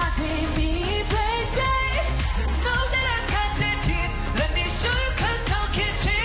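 K-pop dance-pop song: a male group singing into headset microphones over a steady beat with heavy bass.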